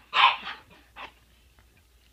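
A large dog makes three short, breathy sounds: the loudest just after the start, a weaker one at about half a second, and another about a second in. After that the sound fades to a faint hush.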